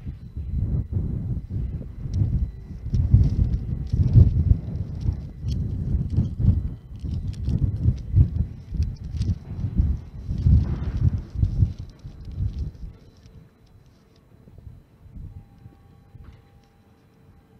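Wind buffeting an outdoor microphone: an irregular, gusty low rumble with scattered knocks, which dies away about three-quarters of the way through and leaves a faint steady hum.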